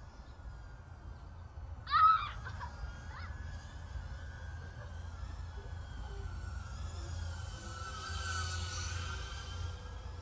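Emax Tinyhawk 3 micro FPV drone's motors and propellers whining steadily, a high buzz that grows louder toward the end. A brief, loud call about two seconds in.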